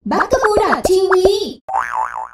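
Cartoon-style voice sting for a channel logo, its pitch bending and gliding, followed near the end by a wobbling, warbling sound effect.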